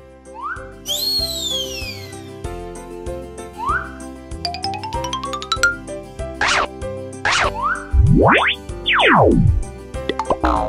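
Cartoon sound effects over children's background music: a falling whistle-like sweep about a second in, several short rising boings, a quick rising run of plinks around the middle, and, loudest, a long rising then a long falling sweep near the end.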